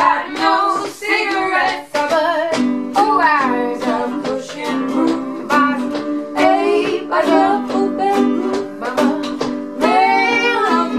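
Several women singing a song together to a strummed ukulele.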